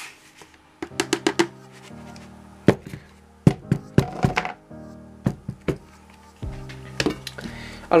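A plastic scoop knocks sharply and irregularly against a plastic bucket as dry carp groundbait is stirred in it, with several quick knocks about a second in and single ones after. Soft music plays underneath.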